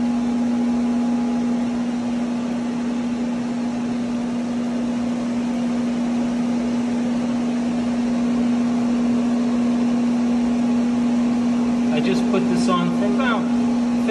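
Chicago Electric heat gun running: a steady fan-motor hum with one constant tone over a rush of blown air. A man's voice comes in near the end.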